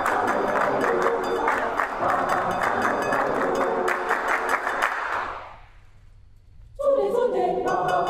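Mixed-voice choir singing with a steady clapped beat. The singing fades out about five seconds in, there is a pause of about a second, then the choir comes back in on a new phrase.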